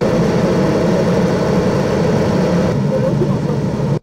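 Dagartech DGVS 450 diesel generator set, a 450 kVA unit, running steadily.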